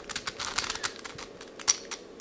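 Plastic pieces of a 5-layer hexagonal dipyramid twisty puzzle (a shape-modded 5x5x5 cube) clicking and rattling as its layers are turned by hand: a quick run of small clicks, with one sharper click about three-quarters of the way through.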